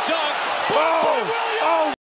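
An excited TV commentator calls the play over arena crowd noise, with the basketball slamming off the rim on a missed dunk near the start.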